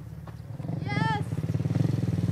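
Small quad bike (ATV) engine running with an even, rapid pulse, growing steadily louder as it comes closer.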